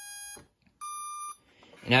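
Two electronic beeps, each about half a second long, the second higher in pitch, as the RC transmitter and receiver finish binding.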